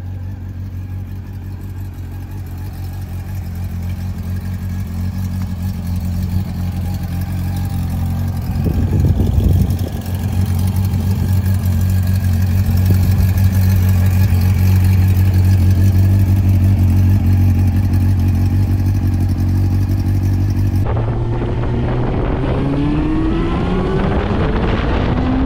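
Honda CB400 Super Four Spec II's inline-four engine idling steadily. Near the end, after a cut, it is heard on the move, revving up as the bike accelerates.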